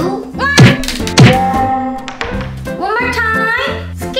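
Two loud thunks about half a second apart, each dropping quickly in pitch, heard over background music with a voice.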